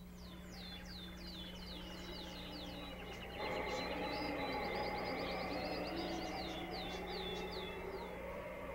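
Birdsong: a bird repeating quick downward-sliding chirps, running into a fast trill midway, over a steady low hum and a soft background wash that swells a few seconds in.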